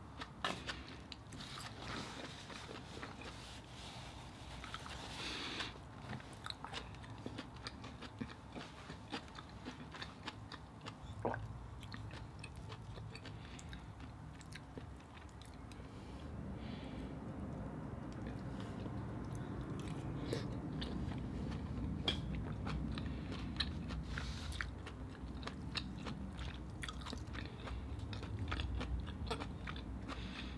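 Close-miked chewing and mouth sounds of a person eating steamed mussels in butter sauce, with many short, scattered clicks and smacks.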